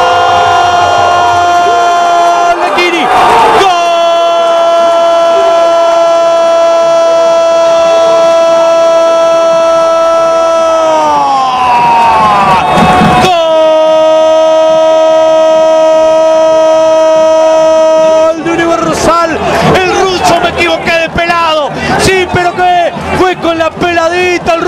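A football commentator's long shouted goal call, one sustained "Gooool" held at a steady pitch. It breaks for a breath about three seconds in, sags in pitch and breaks again near the middle, then is held once more until it gives way to rapid excited commentary near the end.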